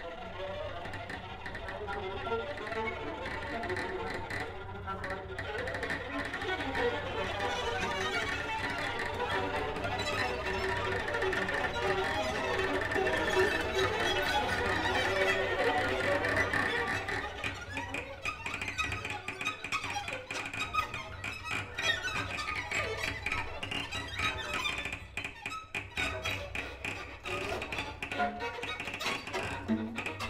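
A bowed string quartet of violin, violas, cello and double bass playing improvised music. A dense texture swells for the first half, then thins about halfway through into many short, separate bow strokes over a held high tone.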